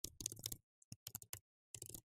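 Computer keyboard being typed on: faint runs of quick keystroke clicks with short pauses between them.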